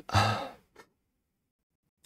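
A man sighs once, a short voiced breath out near the start.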